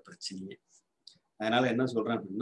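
A man speaking in Tamil. He pauses for about a second in the middle, and a few faint clicks fall in the pause.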